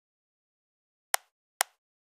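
Two sharp, short clicks about half a second apart, from operating the computer's mouse or keyboard.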